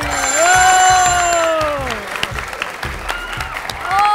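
A bright, steady ringing bell tone sounds as the game-show countdown runs out, over one long drawn-out voice whose pitch slides steadily down. Audience clapping follows in the second half.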